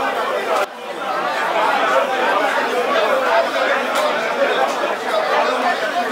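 Indistinct chatter of many people talking at once in a busy shop, with a brief sudden drop in level less than a second in.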